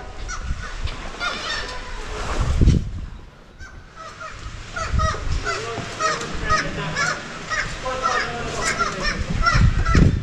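A colony of black-legged kittiwakes calling, many short calls overlapping and repeating throughout, with a few low rumbles underneath.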